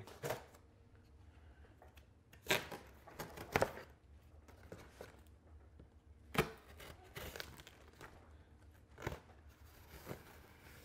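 A blade slicing through the packing tape along the top seam of a cardboard box: a handful of short scraping strokes, spaced a second or more apart, with quiet between.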